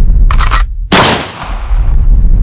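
Cinematic impact sound effects over a deep, continuous rumble: a short crackling burst near the start, then a sharp, loud hit about a second in.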